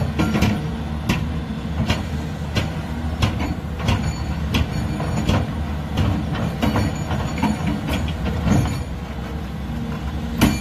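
Large hydraulic breaker (rock hammer) on a heavy excavator hammering its chisel into rubble: sharp, irregular metallic blows over the excavator's steady diesel engine.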